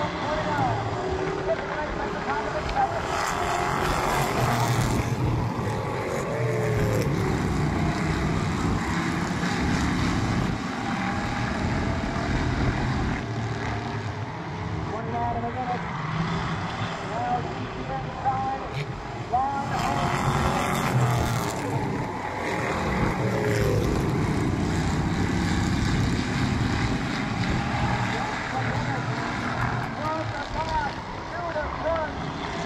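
A field of Street Stock race cars running laps on a paved oval, their engines droning throughout. The sound swells twice, about three seconds in and again past the twenty-second mark, as the pack comes round close by.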